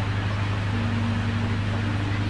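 Steady low electrical hum with hiss from an amplified sound system. A faint held note comes in about a second in.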